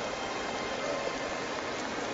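Steady background ambience: an even hiss with no distinct events.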